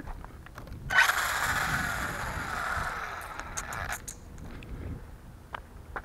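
Traxxas Slash 4x4 RC truck with a Castle 2200 kV brushless motor on 6S, rolling for about three seconds: a rushing scrape of the tyres with a motor whine that falls as the truck slows, then a few light clicks.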